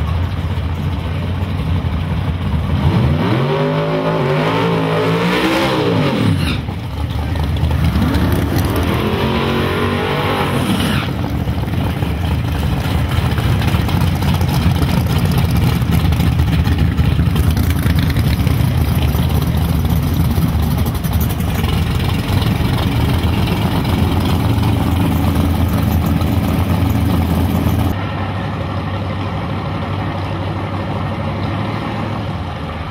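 Small-block V8 drag cars revving twice, each rev rising and falling in pitch over a few seconds, then a loud steady low rumble of the engines running as the cars stage.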